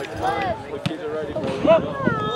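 Overlapping shouting voices of spectators and players at an outdoor soccer match, with one sharp knock a little under halfway through.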